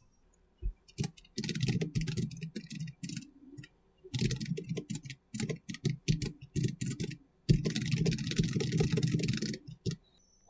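Computer keyboard typing: three runs of quick keystrokes, starting about a second in, with short pauses between them.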